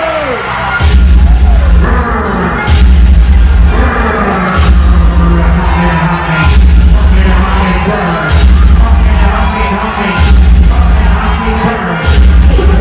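Loud ballroom vogue beat played over a sound system: a heavy bass note that repeats about every two seconds with sharp percussion hits, and crowd voices shouting over it.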